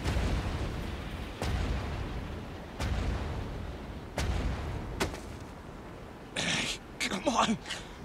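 Animated sound effects of heavy, booming footsteps, a sharp hit with a low rumble about every second and a half, over a fading rumble. Near the end a voice gives short, strained grunts and breaths.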